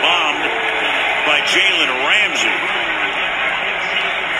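NFL television broadcast audio: a play-by-play announcer talking over a steady roar of stadium crowd noise.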